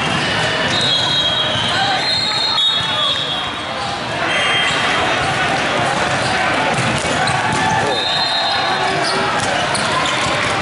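Echoing volleyball hall: crowd chatter from many courts with the thumps of volleyballs being bounced and hit.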